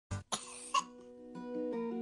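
A sick child coughing, three quick coughs in a short fit, as from a cough and cold. Soft, gentle music starts about halfway through.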